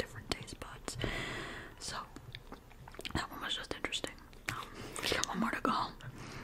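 Close whispered talking into a microphone, with short mouth clicks between words and a breathy stretch about a second in.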